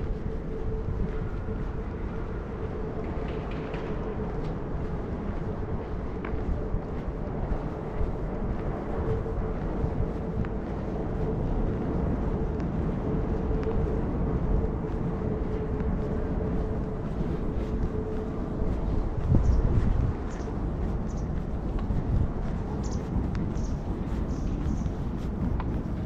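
Outdoor street ambience with a low rumble of wind on the microphone and a faint steady hum that stops about three quarters of the way through, followed by a brief louder low rumble.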